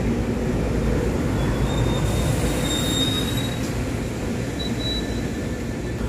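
SEPTA Silverliner IV electric commuter railcars rolling past close by, a steady rumble of wheels on rail. Thin, high wheel squeals come in about a second and a half in, last a couple of seconds, and return briefly near the end.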